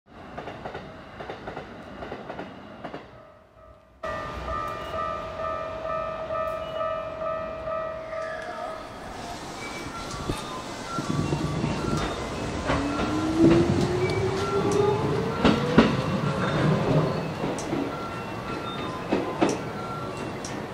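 Electric train running sounds: a Keikyu train passing a level crossing briefly, then the short Keikyu Deto 11/12 electric work train at a station, first a steady electrical whine, then a motor whine rising in pitch over rumbling wheels and sharp rail clicks as it comes in along the platform.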